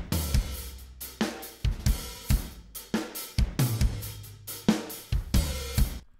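Recorded rock drum kit played back in a mix, with kick, snare and cymbal hits in a steady beat over low held notes. The snare's layered sample is muted, so only the original snare microphones are heard, with their cymbal bleed.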